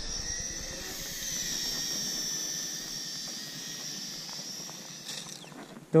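Toy quadcopter's small motors and propellers whining high-pitched as it lifts off, the pitch wavering slightly as it is flown against the wind, then fading near the end.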